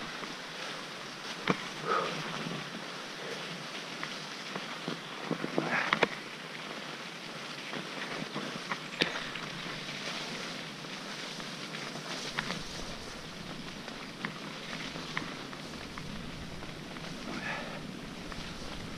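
Mountain bike rolling downhill over a wet, slushy forest track: steady tyre and wind noise, with occasional sharp clicks and rattles from the bike over bumps.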